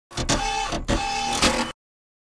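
Short intro sound effect of about a second and a half: three noisy strokes with a steady mid-pitched tone between them, cutting off abruptly.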